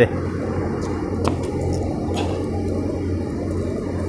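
Steady low background hum and room noise, with a faint click about a second in.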